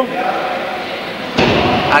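A sudden dull thump about a second and a half in, running on as about half a second of rough noise, in a large hall.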